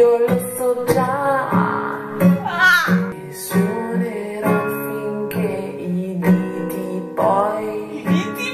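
Nylon-string classical guitar strummed and plucked in a steady rhythm, with a woman singing along.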